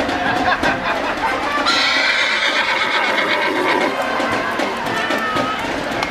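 A horse whinnying about two seconds in, over steady crowd chatter and street noise.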